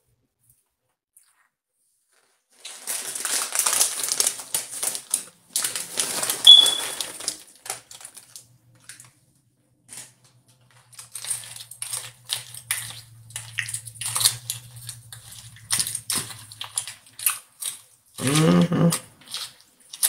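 A person eating noodles close to a phone microphone: noisy slurping and chewing bursts for several seconds, then scattered clicks and taps of a fork against the bowl.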